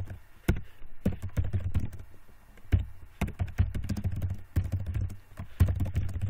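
Typing on a computer keyboard: a quick, irregular run of keystrokes, with a short lull about two seconds in before the typing picks up again.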